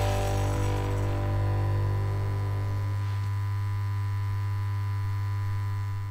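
A steady, low droning hum with many overtones, the sustained tail of the outro's closing sound, its higher tones slowly dying away.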